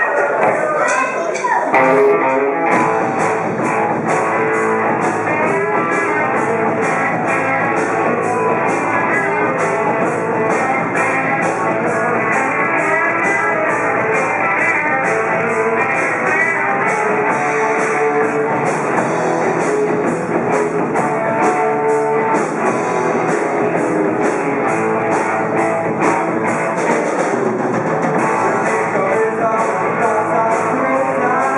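Small rock band playing live: guitar and drums, with the song starting in full about two seconds in and keeping a steady beat.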